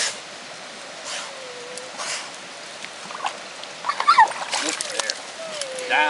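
Water splashing and sloshing in a steel bucket as a pointer dog plunges its head in after trout, in a few separate splashes with a quicker cluster near the end.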